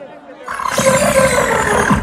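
A loud shout and cheer bursts out about half a second in and lasts about a second and a half. One voice slides down in pitch over the noise of many voices.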